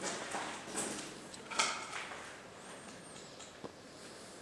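Three scuffing footsteps on the concrete floor of a bunker, a little under a second apart, followed by a few faint small clicks.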